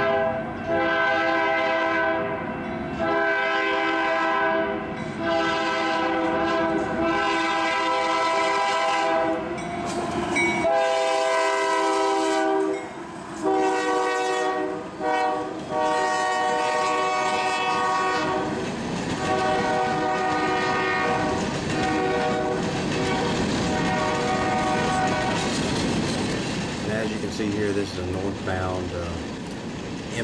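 Union Pacific freight locomotive's multi-chime air horn sounding a string of long blasts for a grade crossing. The horn stops a few seconds before the end, leaving the rumble and clatter of the passing train.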